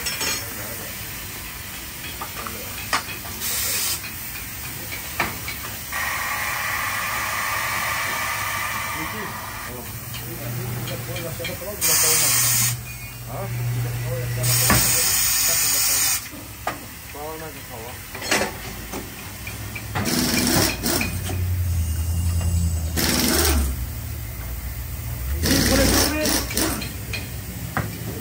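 Pneumatic tire-changing machine mounting a large low-profile tire onto a wheel: loud bursts of compressed-air hiss from its air valves, the turntable motor whirring for a few seconds, and a few sharp metal clanks.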